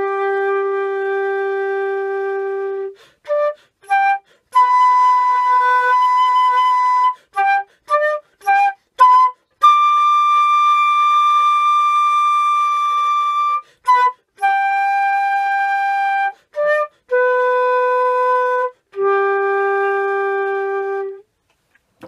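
Concert flute playing an improvised phrase: long held notes at several pitches, some low and some high, linked by short quick notes. Brief silent breaks between notes are quick open-throat breaths for refilling the lungs between phrases.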